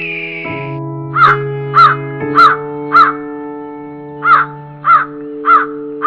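A crow cawing in two runs of four caws, each caw a little over half a second apart, over background music of soft held keyboard chords.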